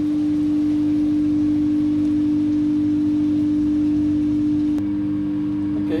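A loud, steady low electrical hum. A sharp click comes near the end, after which the lower part of the hum shifts slightly.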